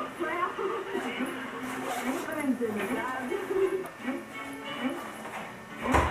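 A high voice singing a melody, with music along with it.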